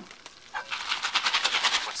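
Stovetop popcorn in a foil Jiffy Pop pan being shaken over a hot burner: kernels rattle and pop in a fast, even run of crackles that starts about half a second in.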